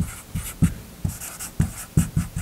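Dry-erase marker writing on a whiteboard: a run of short, irregular strokes as words are written.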